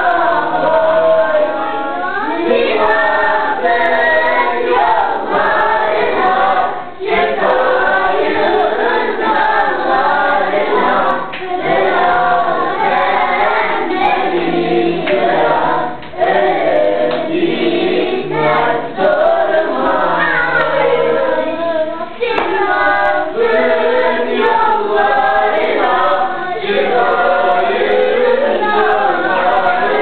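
A group of children singing a song together, in phrases with short breaks between them.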